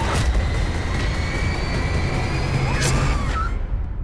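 Trailer sound design: a deep rumbling drone under a thin high tone that rises slowly, with two sharp hits, one right at the start and one near three seconds in. The high end then drops away toward the title card.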